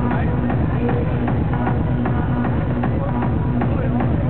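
Loud hardstyle music over an arena sound system, heard from within the crowd: a heavy kick drum at about two and a half beats a second with synth lines over it, the full beat coming in right at the start.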